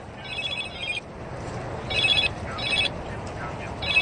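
A mobile phone's ringtone: short bursts of high electronic tones that repeat four times with pauses, as a call comes in.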